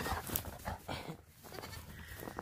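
A goat kid's high bleat cutting off right at the start, then faint scattered crunches and rustles of goat kids stepping in snow.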